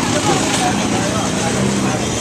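Crowded street hubbub heard from a moving cycle rickshaw: a steady din of nearby voices and traffic, with one voice a little clearer near the end.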